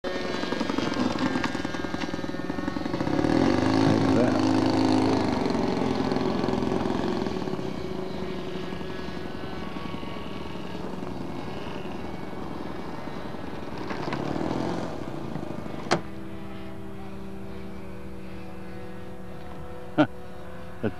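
Radio-controlled model airplane engines running as models taxi on the runway, loudest a few seconds in. A sharp click comes about 16 seconds in, after which a quieter, steadier engine tone continues.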